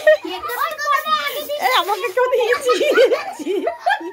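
Several children's voices shouting and giggling at once, high and excited, overlapping throughout.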